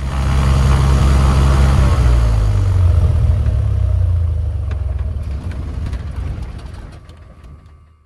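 Cessna 182's piston engine running, heard from inside the cockpit, with a steady low drone. Its note drops a little about two seconds in, and the sound fades away over the last few seconds.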